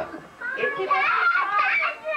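A throat being cleared, then a child's high-pitched voice chattering wordlessly for about a second and a half.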